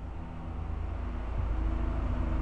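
A low, steady rumble that grows gradually louder.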